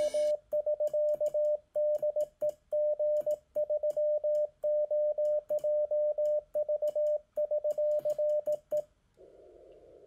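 Morse code (CW) sent as a single mid-pitched keyed tone, short and long elements in uneven groups, for about nine seconds. Near the end it gives way to soft, narrow radio receiver hiss.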